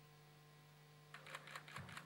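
Near-silent hall with a steady low electrical hum; about a second in, a quick run of faint clicks begins, and a low thud follows near the end.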